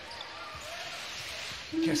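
Basketball dribbled on a hardwood court over the murmur of an arena crowd, with echo from the hall. A commentator starts speaking near the end.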